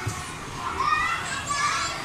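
Children playing, with high-pitched children's voices calling and chattering over a steady background hubbub.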